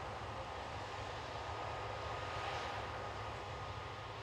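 Steady distant drone of a combine harvester running in a cornfield: an even, low engine rumble with a faint steady whine over it.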